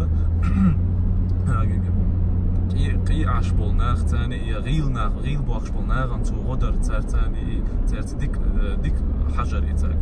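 Steady low drone of a car's engine and road noise heard from inside the cabin while driving in traffic, with faint talking over it.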